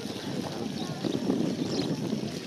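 Indistinct voices talking, with wind on the microphone.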